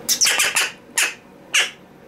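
A caged black corvid calling in harsh squawks: a quick run of several in the first half-second, then two single calls about a second and a second and a half in.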